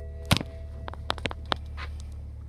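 Sharp clicks and knocks from a BMW X5's electronic gear selector lever being worked, the loudest about a third of a second in, over the steady low hum of the idling diesel engine. A held chime tone dies away within the first second.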